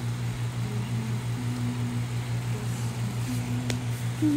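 A steady low machine hum with a slight regular pulse, and one faint click near the end.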